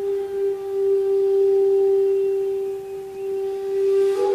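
Kyotaku, the traditional Zen end-blown bamboo flute, holding one long steady low note, pure in tone, that swells gently and sags in loudness about three seconds in. A fresh breathy attack on the next note begins right at the end.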